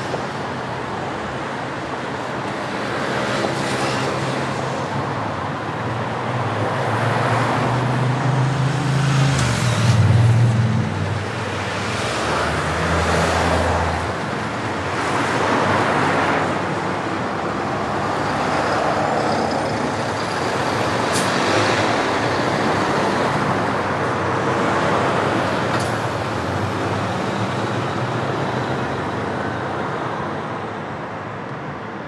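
City intersection traffic, with a box truck's engine running low and heavy as it pulls across close by. It is loudest about ten seconds in and fades after about fourteen seconds, while cars pass through with tyre noise.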